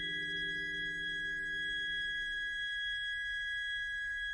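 Electronic drone music: steady, unwavering electronic tones. A high pair of tones holds throughout, while a lower cluster of tones fades out about two-thirds of the way through.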